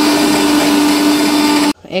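Electric mixer grinder running at full speed, blending a thick paste in its small steel jar: a loud, steady whir with a held hum underneath. It is switched off and cuts out suddenly near the end.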